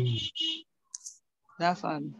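Speech stops after half a second and resumes near the end. In the pause there is a single short, sharp click about a second in, as from a computer mouse.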